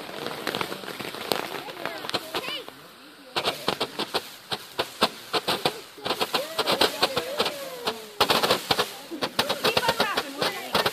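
Consumer fireworks firing from ground tubes: dense, rapid crackling pops in clusters, with a short lull about three seconds in before the popping picks up again.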